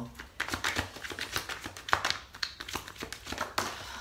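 A deck of oracle cards being shuffled by hand: a quick, irregular run of card flicks and taps.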